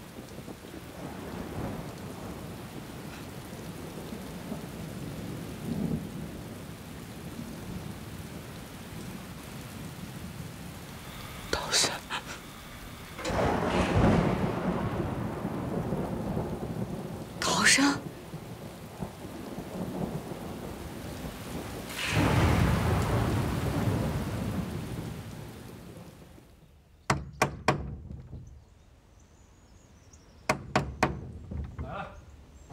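Steady rain with thunder: sharp cracks about twelve and eighteen seconds in, and long rolling rumbles in the middle and again about two-thirds through. The storm fades away near the end, and a few knocks sound on a wooden door.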